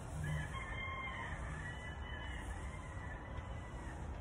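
A rooster crowing: one long drawn-out call lasting about three seconds, over a steady low background rumble.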